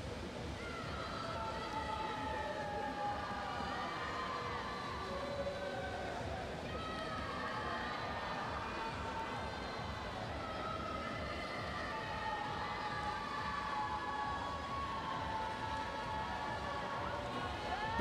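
Spectators in an indoor pool hall cheering during a swimming race: a steady crowd din with drawn-out shouts wavering above it.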